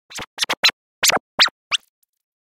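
Record-scratch-style intro of an electronic pop mashup: about seven short, choppy sweeps, several gliding up or down in pitch, in the first second and three quarters.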